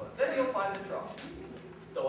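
A person's voice in the first second, a short wordless vocal sound that the recogniser did not catch as words, then quieter through the rest.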